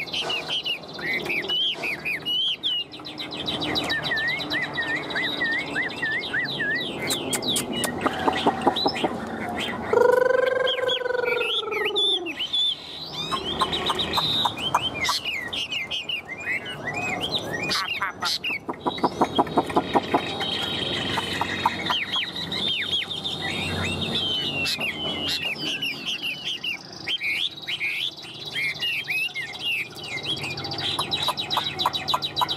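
Chinese hwamei singing continuously: a rapid, varied run of clear whistled notes and slurs, with buzzy rattling phrases about eight and eighteen seconds in. About ten seconds in, one lower, drawn-out arching call stands out as the loudest sound.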